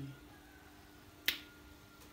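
A single sharp click about a second in, over a faint steady hum.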